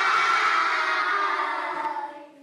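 A class of young children calling out a long, drawn-out "goodbye" together, many voices held at once, fading away at the end.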